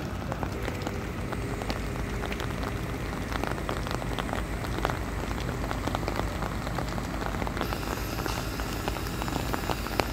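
Rain pattering in dense, irregular drops close to the microphone, over a low steady rumble.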